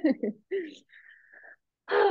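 A woman laughing in a few short bursts, trailing off into a thin, high squeak lasting about half a second.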